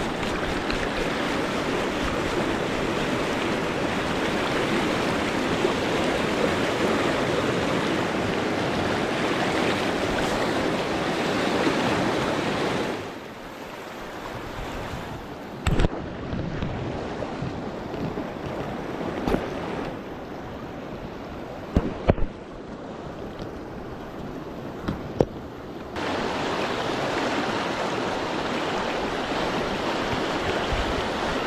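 Fast river rapids rushing steadily. From about a third of the way in to near the end, the sound turns quieter and muffled for a stretch, with a few sharp clicks, then comes back to full strength.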